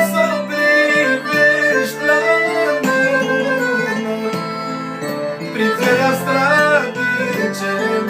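Romanian manele music: a piano accordion plays a quick, ornamented melody over a backing band, in an instrumental passage.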